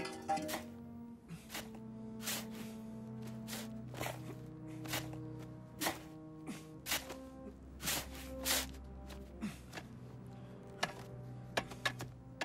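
Background music with long held notes, over a run of sharp, irregularly spaced strikes of a shovel digging into sand.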